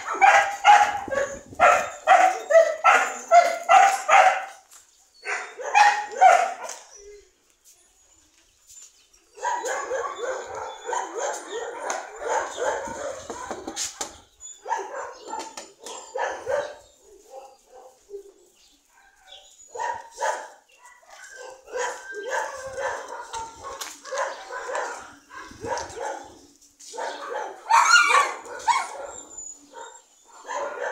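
Dogs barking in play, in quick runs of short barks that stop for a couple of seconds partway through, then pick up again with a long stretch and a louder cluster near the end.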